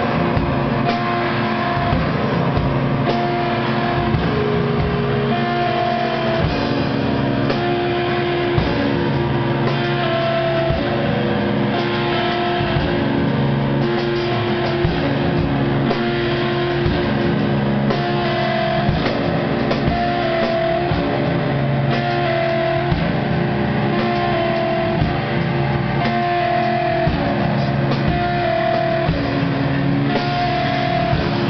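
A live band, with electric guitar and drum kit, playing loud, dense heavy music. Held notes ring over constant drum hits.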